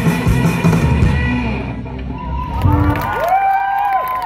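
A young rock band playing live with electric guitar, bass and drums; the song stops about two seconds in, a last short low note sounds, and the crowd answers with cheers and rising-and-falling whoops.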